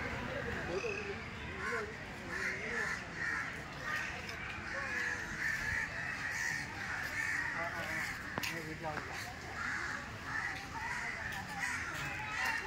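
Birds calling over and over, short calls coming every second or so, with people talking faintly in the background.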